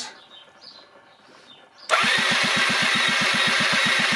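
Electric starter cranking the Rexy 50's 50cc two-stroke engine with the spark plug out and grounded on the frame for a spark test, so the engine spins over without firing. It starts about two seconds in and turns over steadily at about ten beats a second.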